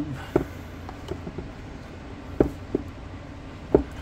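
Hands handling a cardboard product box, trying to get its snug-fitting lid off: a few short taps and knocks of fingers and box against each other over a quiet background.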